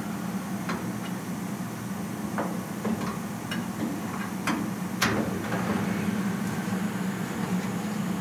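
Scattered light taps and clicks of hand work on a car's bare steel door window frame, about half a dozen, the sharpest about five seconds in, over a steady low hum.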